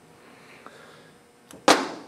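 A master cylinder with a plastic reservoir set down on a metal workbench top: a faint click, then one sharp clunk near the end.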